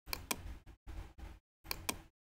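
Computer mouse clicking: two sharp clicks just after the start and another pair near the end, over a low hum that cuts in and out.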